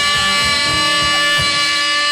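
1950s-style doo-wop rock-and-roll band music: guitar and drums under a held chord, with a steady beat.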